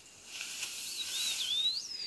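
Leaves and bamboo stems rustling as someone pushes through dense undergrowth, starting about a third of a second in. Over it comes a single high, thin whistled bird call, wavering and then sweeping up before it falls away near the end.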